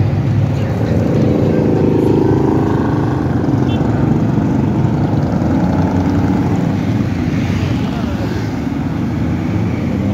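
A column of motorcycles riding past, their engines running together in a steady loud drone. A few seconds in, one passes close and its pitch falls away.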